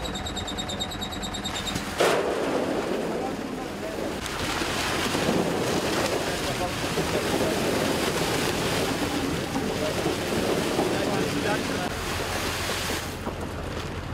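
Seed potatoes pouring from a hanging bulk bag into a potato planter's hopper: a loud, steady rattling rush that starts suddenly about two seconds in and stops near the end. A tractor engine idles underneath, and a rapid high beeping sounds for the first couple of seconds.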